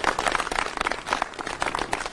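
Applause from a group of people, many hands clapping in a dense, irregular patter.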